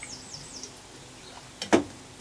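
A small bird chirping outside, a quick run of short falling notes in the first moments. Near the end there is a single short, sharp sound.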